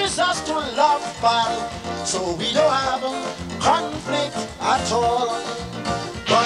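Live calypso: a band playing an up-tempo song with a steady beat while a man sings the lead into a microphone.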